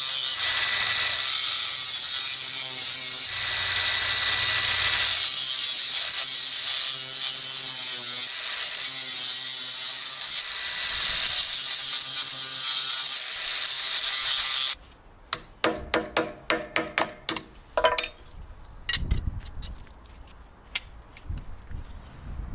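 Angle grinder running under load, grinding down the edges of a hole freshly bored in a metal plate: a steady whine that dips and changes as the disc bites. It cuts off about 15 seconds in, followed by a series of sharp clicks and knocks of metal parts being handled.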